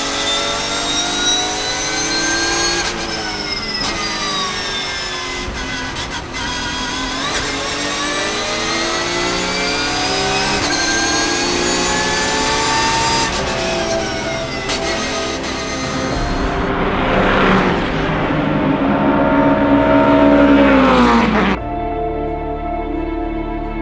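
Porsche race car's engine revving hard through the gears, its note climbing and dropping back at each upshift. Near the end a race car passes by, its engine note rising and then falling away steeply.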